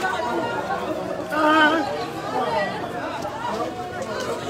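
Several people talking over one another: a murmur of chatter, with one voice standing out about a second and a half in.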